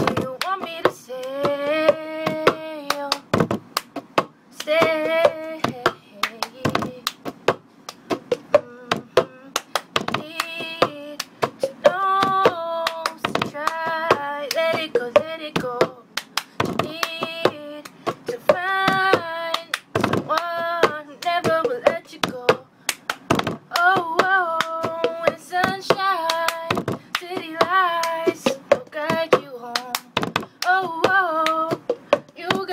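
A girl singing a pop song over a cup-game rhythm: hand claps, and a cup tapped and knocked on a tabletop, in a repeating pattern.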